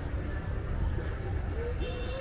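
Wind buffeting the microphone in a low, uneven rumble over distant city noise, with faint far-off voices near the end.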